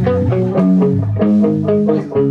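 Amplified electric guitar picking a quick run of single notes over lower notes that ring on underneath.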